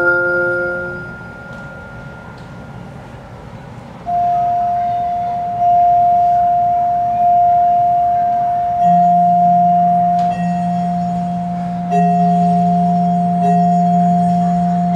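A held ensemble chord fades away at the start, and after a short hush a vibraphone takes over: one note struck again and again about every second and a half, each stroke ringing on with a slow decay. A low vibraphone note joins about nine seconds in and a third, middle note about twelve seconds in, the notes ringing together.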